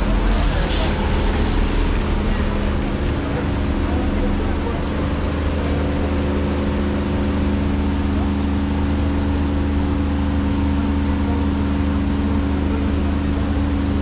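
A bus engine idling with a steady, even hum.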